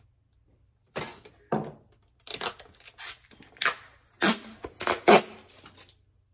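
Protective plastic film being peeled off a white sublimation blank for a tin cover: a series of short, irregular rips and crinkles starting about a second in, loudest near the end.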